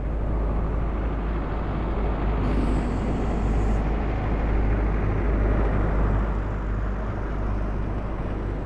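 A steady low rumbling noise with no clear pitch or rhythm. A brief high hiss comes in and drops out about two and a half to four seconds in.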